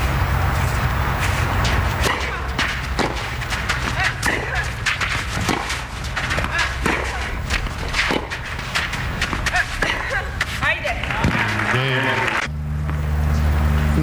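Tennis rally: a ball struck back and forth by racquets, with a sharp hit about every second over a steady crowd background. A voice-like cry comes near the end.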